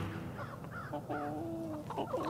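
Backyard chickens calling softly, with one short drawn-out call in the second half.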